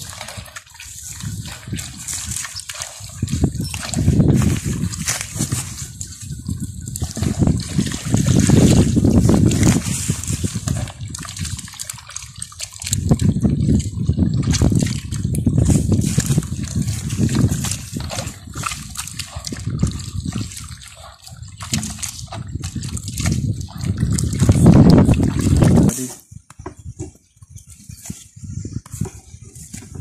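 Hands squeezing and mashing banana fruit and peels in water in a metal basin, the water sloshing in bouts of a few seconds. The sloshing stops about four seconds before the end.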